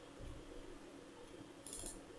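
A brief faint click of computer controls near the end, over a low steady hum.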